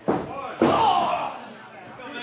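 Two sharp impacts of wrestlers in the ring, about half a second apart, the second the louder, followed by a brief shout.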